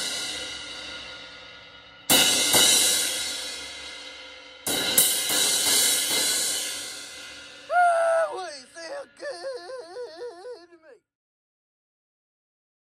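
Zildjian K Custom Dark 18-inch crash cymbal, its cracked edge cut back and smoothed, being play-tested: it rings out from a hit just before, then is struck twice more about two and a half seconds apart, each crash fading slowly. Near the end a wavering, voice-like warble lasts about three seconds and stops suddenly.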